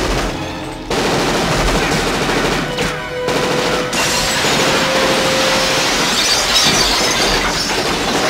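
Film gunfight sound mix: sustained automatic gunfire with glass shattering and showering down, and a steady held tone through the middle.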